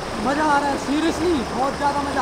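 A river rushing over rocks in shallow rapids, a steady wash of water noise, with men's voices calling out over it three times in rising-and-falling, drawn-out calls.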